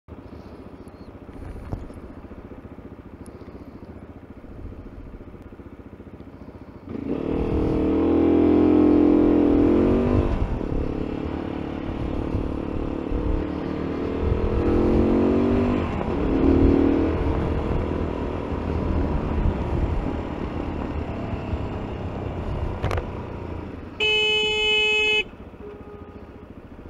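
Motorcycle engine heard from the rider's seat, running quietly at first, then pulling away loudly about seven seconds in and rising in pitch as it accelerates, and again a few seconds later. Near the end a vehicle horn blares steadily for about a second.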